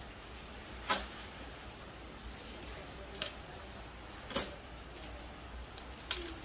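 Coins clinking as they are set down onto stacks of coins on a table: three short sharp clinks, about a second in, a little after three seconds and around four and a half seconds, over a low steady hum.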